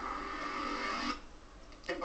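A TV news section jingle with a held musical chord, heard through a television speaker; it cuts off suddenly about a second in.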